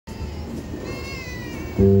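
Open-air background murmur with a brief high call that falls in pitch, then near the end a jazz band comes in suddenly with a loud sustained chord on keyboard and double bass.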